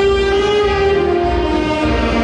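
Saxophone ensemble playing sustained chords, the held notes shifting to new pitches about a second in.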